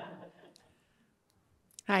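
Audience laughter fading out in the first half second, then a near-quiet pause with two faint clicks, before a woman's voice says "Hi" at the very end.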